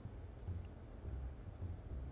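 A few faint clicks about half a second in, over a low, soft pulsing roughly twice a second.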